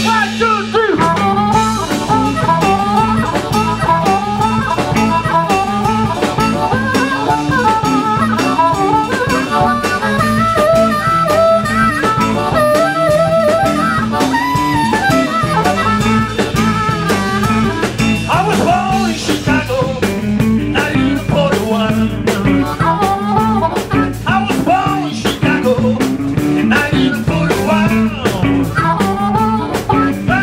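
Blues harmonica played with cupped hands into a handheld vocal microphone, bending and holding notes in a solo, over a live band of electric guitars and drums.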